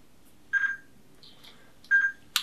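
Two short, high single-pitch beeps about a second and a half apart, with faint soft rustles between them.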